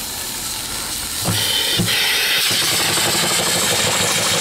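A brand-new single-cylinder reproduction steam engine (2.75-inch bore, 3-inch stroke) being started on steam: a steady hiss of steam, a couple of knocks as it begins to turn over about a second in, then from about two seconds in it runs with a fast, even rhythm of exhaust chuffs and clatter.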